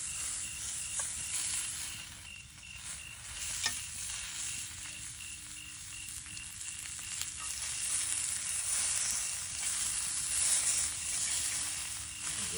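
Copperhead snake meat sizzling in a pan over campfire coals while it is stirred with a utensil, the sizzle growing louder in the second half. A single sharp click about three and a half seconds in.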